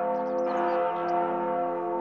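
Church bells ringing, many sustained tones overlapping.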